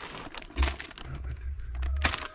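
Plastic packaging and parts of a water-bowl kit being handled, crinkling and rustling, with a low rumble through the second half.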